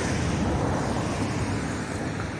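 Steady outdoor background noise: a low rumble with a hiss above it, easing off slightly toward the end.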